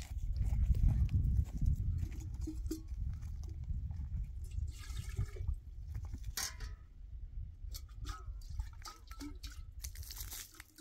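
Water being poured and splashing from metal pots, with clinks and knocks of the pots and a steel flask being handled. A low wind rumble on the microphone is strongest in the first two seconds.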